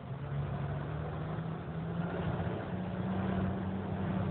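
A vehicle's engine running with a steady low hum over road noise, its note stepping up slightly in pitch about three seconds in.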